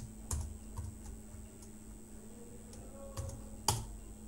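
A few scattered computer keyboard keystrokes, with one louder keystroke near the end, over a faint steady hum.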